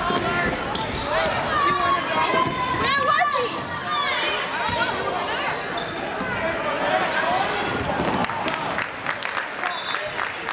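Basketball gym game sound: many spectators' voices and shouts over players' sneakers squeaking on the hardwood floor and a basketball bouncing as the teams run the court.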